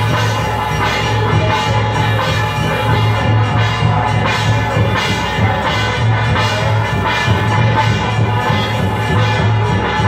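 Chinese temple ritual percussion: a hand-held gong struck repeatedly, about once a second, its metallic ring sustained throughout, with drumming underneath, beaten to accompany a spirit medium's trance dance.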